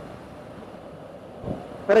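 Steady wind and road noise of a Triumph Tiger 850 Sport motorcycle cruising at about 60 mph on a motorway, with no distinct engine note standing out.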